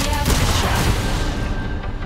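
Trailer score with a burst of gunfire and heavy booms, loudest in the first second, then thinning and dying down toward the end.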